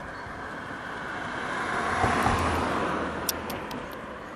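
A car passing by on the road: its tyre and engine noise swells, is loudest two to three seconds in, then fades away. A few light clicks near the end.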